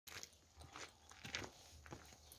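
Faint footsteps crunching on gravel, a few irregular steps.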